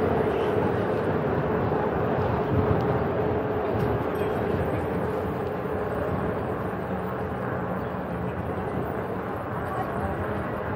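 Wind rushing over the microphone of a bicycle-mounted camera while riding at cycling speed, with distant voices of people in the street. A faint steady hum runs under it and fades through the second half.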